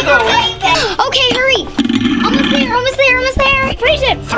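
Children talking over background music.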